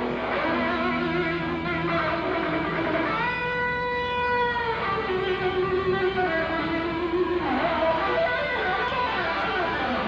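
Electric guitar playing a melodic lead line live, with bass guitar underneath. About three seconds in, one note is held for about a second and a half before the line moves on, and a note bends downward near the eighth second.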